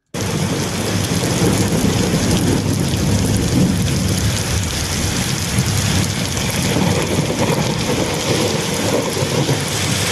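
A loud, steady rushing noise, heaviest in the low end, cuts in abruptly out of silence and holds an even level throughout.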